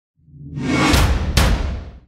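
Show-opening logo sound effect: a whoosh that swells up with a deep low rumble, two sharp hits close together about a second in, then a fade-out near the end.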